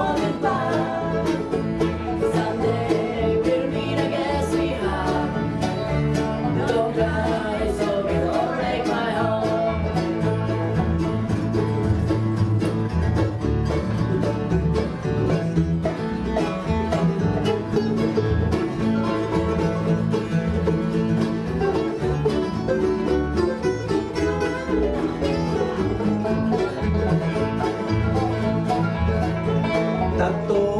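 Acoustic string band playing live in a steady, unbroken country-style jam, with acoustic guitars, fiddle and upright bass.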